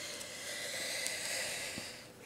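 A steady, airy hiss with no pitch to it, fading out near the end.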